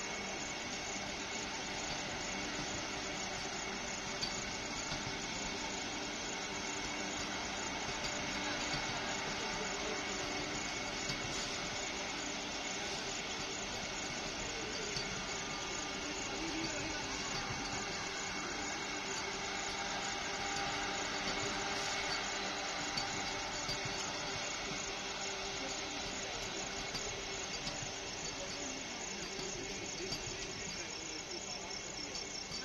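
Vande Bharat electric multiple-unit train moving past, a steady, even rolling noise with a hiss from its coaches.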